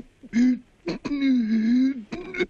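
A person's wordless vocal sounds: a short voiced sound, then a longer held, slightly wavering one lasting about a second, with a couple of soft clicks between them.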